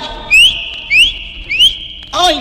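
Three whistles in a break in a cumbia recording, about 0.6 s apart. Each slides sharply up in pitch and then holds a steady high note.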